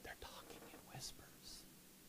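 Faint whispering voice, with two soft hissing sibilants about one and one and a half seconds in.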